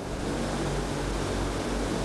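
Steady, even hiss with a deep rumble beneath it, starting abruptly and holding at a constant level.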